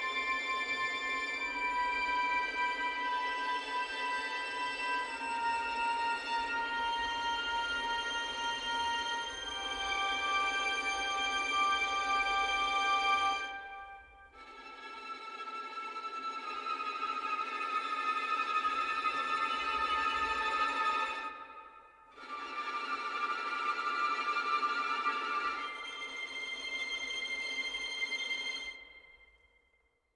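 Sampled first-violin section playing muted harmonics: high, sustained harmonic notes and chords that step to a new pitch every second or two. About halfway through this gives way to harmonic tremolo in two phrases, each fading out, with a short gap between them.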